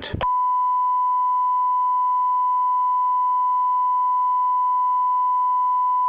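A steady electronic test tone: one unwavering pure pitch, like a long held beep, that begins just after a recorded voice stops and holds without change.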